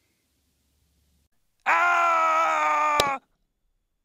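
A loud held tone with many overtones on one steady, slightly falling pitch, starting past the middle and lasting about a second and a half, with a sharp click just before it stops.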